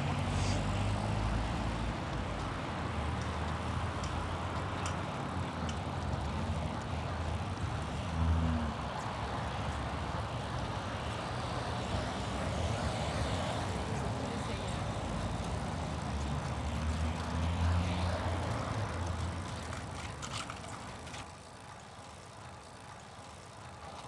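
City road traffic heard from a moving bicycle: car engines and tyre noise passing close by, with a louder pass about eight seconds in. The traffic sound falls away near the end as the bike lane leaves the road.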